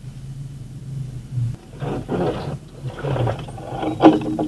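Off-road truck engine running at a steady idle, then revved hard twice: a long surge about two seconds in and a shorter one a second later.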